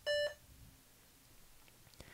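A single short electronic beep from the HP Elite Mini 800 G9 at the very start, lasting about a third of a second: the computer acknowledging the F9 key as it enters its boot menu.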